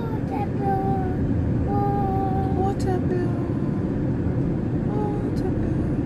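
Steady low rumble of a car driving on an unpaved dirt road, heard from inside the cabin. Over it a soft voice hums a few drawn-out, wavering notes.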